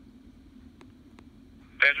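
A faint low hum with two soft ticks, then near the end a man's voice, "Engine", comes on loud and clipped through a RadioShack Pro-668 digital scanner's speaker. This is fire-dispatch radio traffic played back on the scanner.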